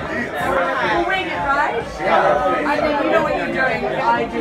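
Several people talking at once in a crowded room: overlapping conversation and chatter.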